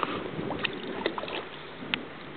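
A hooked herabuna (Japanese crucian carp) splashing at the water surface as it is played on the line, a handful of short sharp splashes over a steady background hiss.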